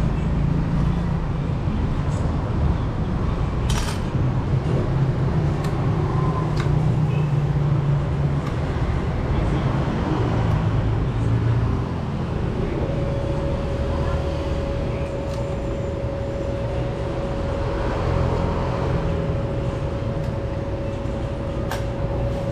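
Occasional sharp metallic clicks from an Allen wrench on a bicycle's mechanical disc brake caliper as it is unbolted from the fork, over a steady low background rumble. A faint steady tone comes in about halfway through.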